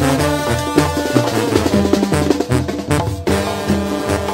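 Mexican banda brass band playing an instrumental carnival tune live, with a bouncing tuba bass line under brass and a steady drum beat.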